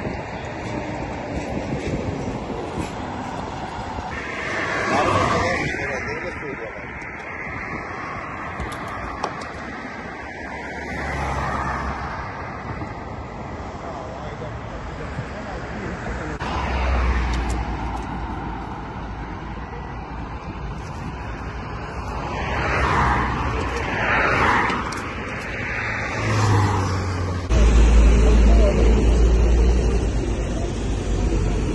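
Road traffic ambience: vehicles passing several times, each swelling and fading, with indistinct voices in the background and a heavier low rumble near the end.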